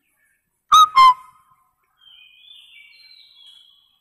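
Chalk squeaking against a blackboard while writing: two loud, short, high squeals about a second in, then fainter squeaks at shifting higher pitches for a couple of seconds.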